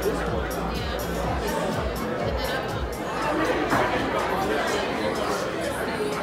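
Background chatter of many people talking at once, with music playing underneath.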